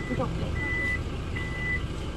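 Toyota Fortuner's power tailgate warning buzzer beeping while the tailgate closes: a steady, high single-pitch beep about every 0.8 seconds, two full beeps, over a low rumble.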